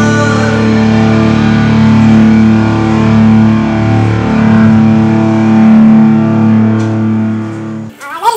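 Distorted electric guitars holding one sustained chord that rings out, thinning and fading just before the end.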